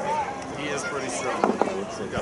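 Voices of men talking and calling on a rugby pitch, with two sharp clicks close together about a second and a half in.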